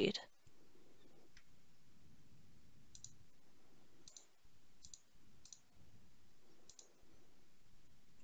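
Computer mouse clicking, about six faint clicks spread a second or so apart, as dropdown options and a toggle are selected.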